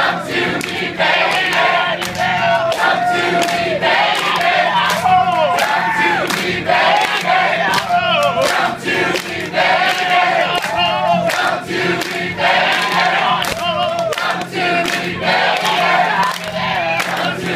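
Many voices singing together: a male singer in the middle of a tightly packed crowd, with the audience singing along close to the microphone and clapping.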